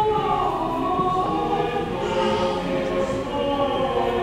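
Choir singing in a large church, holding long notes that change pitch every second or so.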